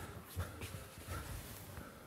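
A few soft footsteps and clothing rustle as a person walks a few paces across a room.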